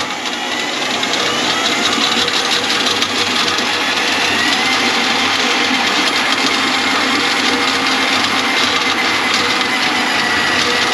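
Electric drum drain auger running steadily, its spinning cable fed into a kitchen sink drain line to clear a grease clog, with a faint whine that slowly rises in pitch.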